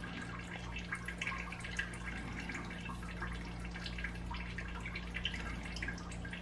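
Quiet room tone: a steady low hum with faint, scattered small ticks over it.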